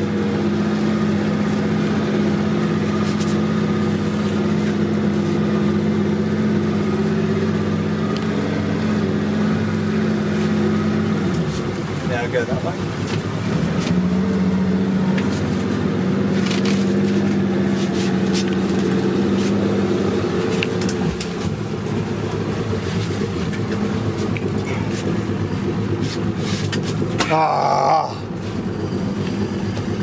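Boat engine running at steady revs as the boat moves along. It drops off about eleven seconds in and comes back a little lower a few seconds later, then eases off about two-thirds of the way through, leaving a steady rush of wind and water.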